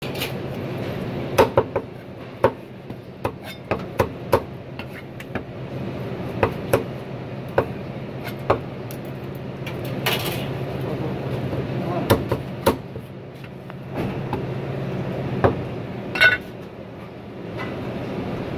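Cleaver chopping roast duck through the bone on a wooden chopping block: a series of sharp, irregular chops. A steady low hum runs behind them.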